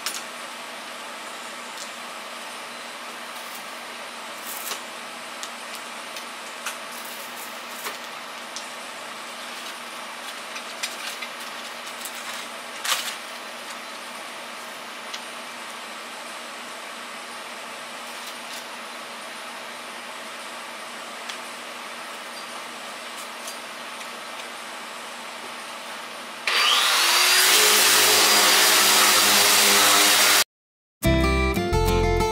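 Small clicks and handling noises over a faint steady hum while sanding discs are changed; about 26 seconds in, a power sander starts up loudly, its whine rising and then holding steady as it runs.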